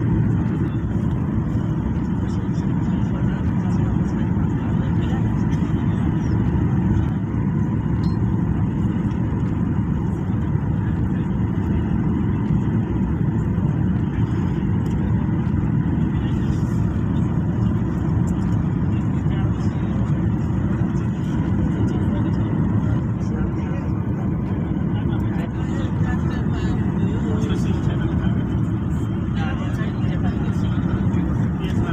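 Steady low-pitched cabin noise of a jet airliner on its approach to land, with the engines and airflow heard from a window seat inside the cabin.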